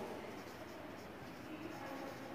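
Faint sound of a marker pen writing a word on a whiteboard.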